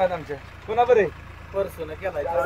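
A man's voice in short snatches of Marathi conversation: one brief phrase about half a second in and a couple of short sounds near the end, over a steady low rumble.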